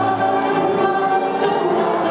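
Live singing of a Yiddish song with piano accompaniment, the voices holding sustained notes.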